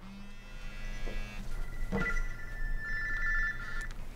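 A phone ringing with an electronic ringtone: held tones, with a change in the tones about halfway through.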